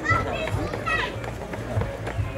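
Background voices of people and children chattering, with a low hum underneath.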